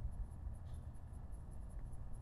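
Faint room tone: a low, steady background rumble with no distinct event.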